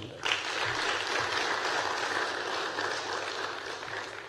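An audience clapping in applause. It starts a moment in, holds steady, and dies away near the end.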